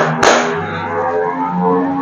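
A couple of sharp hand claps at the very start, the last beats of a rhythmic clapping pattern, then background music with sustained instrumental notes.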